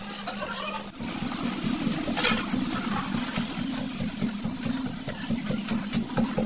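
A steady low mechanical hum, like a small motor running, starts about a second in. A few short clinks come from a steel spatula scraping a steel kadhai.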